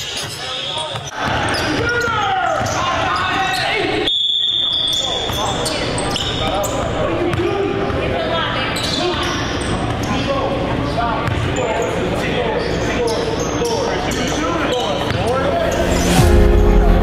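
Basketball gym sound: players' and bystanders' voices echoing in the hall, with a ball bouncing on the hardwood floor. About four seconds in, a single high steady whistle blast lasting about a second stops play, a referee's whistle calling a foul that leads to free throws.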